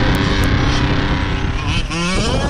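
Losi 5ive-T 1/5-scale RC truck's two-stroke gas engine running, revving up near the end.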